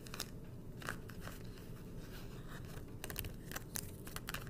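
Tarot cards being picked up and slid across a cloth-covered table: faint, scattered clicks and scrapes, with a small cluster about three seconds in.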